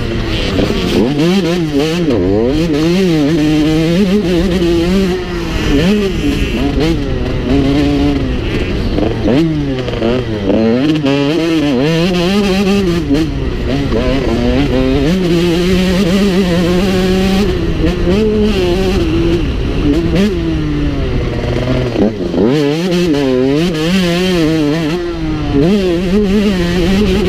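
Motocross bike engine racing, loud, its revs climbing and dropping over and over as the rider works through the gears around the track.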